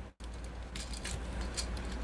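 Faint clicks and rubbing of hard plastic parts as a Transformers Siege Megatron action figure is handled, a leg piece being worked into its slot, over a low steady hum.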